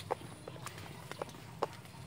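Footsteps of people walking on a concrete footpath: short, sharp shoe taps about every half second.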